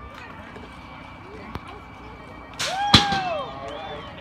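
BMX starting gate dropping about three seconds in: a rush of noise ending in a sharp slam, with a loud shout from the crowd at the same moment, over a steady outdoor babble of voices.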